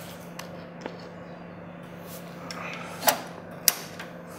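A hard drive in its hot-swap tray is pushed into a NAS drive bay and latched shut, making two sharp clicks near the end. The NAS hums steadily underneath.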